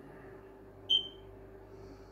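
A single short, high-pitched beep about a second in, fading quickly, over a faint steady hum.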